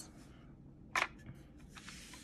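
A single sharp click about a second in, with a few faint ticks near the end: a plastic palette insert knocking against a metal watercolor tin as it is handled.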